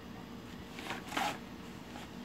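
Quiet, with a couple of brief, soft rustling noises about a second in.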